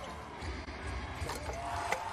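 Arena crowd noise during live basketball play, with a few short knocks of the ball and players on the hardwood court.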